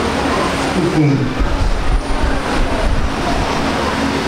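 A congregation praying aloud together: many overlapping voices in a loud, dense din, with a deep rumble underneath from about a second and a half in.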